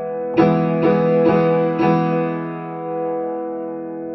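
Piano played with a chord struck about half a second in, then notes added about every half second for the next second and a half. The sound is then held and slowly fading.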